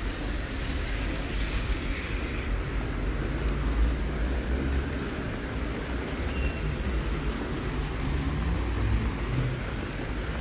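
Street ambience in the rain: car traffic on wet road, a steady noise with a low rumble under it.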